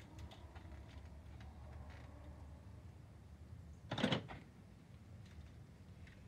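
Scissors cutting down the corners of a paperboard milk carton: faint snipping and crinkling, with one short, louder crackle of carton about four seconds in.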